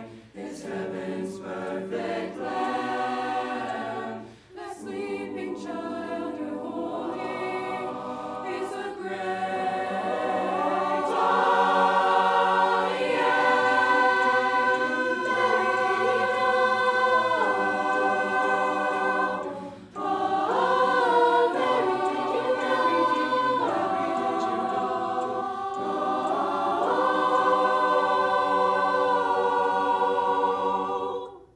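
Mixed high school choir singing unaccompanied in held, sustained chords. The sound breaks off briefly twice, about four and twenty seconds in, and swells fuller and louder from about eleven seconds.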